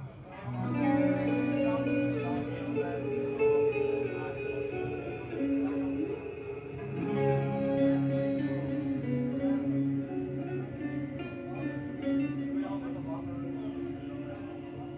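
Two electric guitars playing a slow, melodic twin-guitar passage without drums, long notes held and changing about once a second: the guitarists' featured interlude in a live death metal set.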